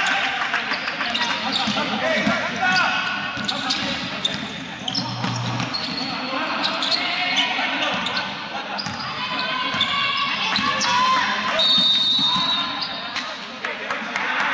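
Basketball game in a sports hall: a basketball bouncing on the court floor and players' and spectators' voices, echoing in the large hall.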